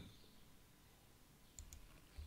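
Near silence, then a couple of faint computer mouse clicks near the end.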